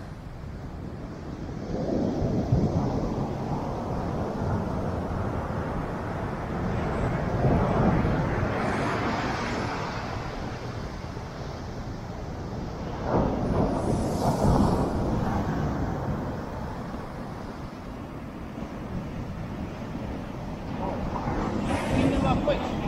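Ocean surf breaking on a sandy beach, a rushing noise that swells and fades several times as waves come in, with wind buffeting the microphone.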